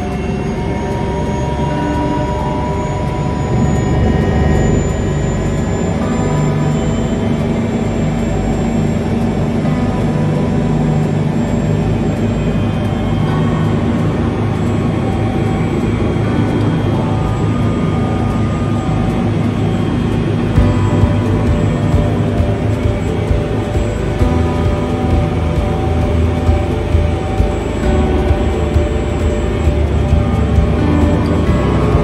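Helicopter turbine engine and rotor running, heard from inside the cabin: a steady whine over a dense low rumble, building over the first few seconds, with short regular thumps in the second half.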